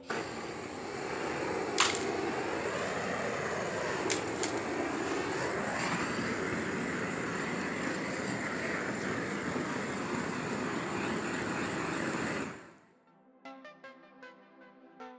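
Propane torch burning with a steady rushing hiss, with a couple of sharp clicks in the first few seconds. It cuts off abruptly near the end, and background music starts.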